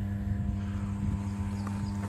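Steady electrical hum of a 110 kV substation, a low drone with a ladder of evenly spaced overtones, typical of a power transformer's magnetic hum at twice the 50 Hz mains frequency, with a low rumble underneath.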